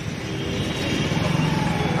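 Steady engine and road noise of a moving vehicle travelling through town traffic.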